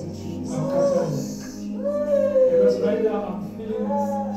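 A voice giving about three long, wavering cries that rise and fall slowly, each lasting about a second, over a steady low hum.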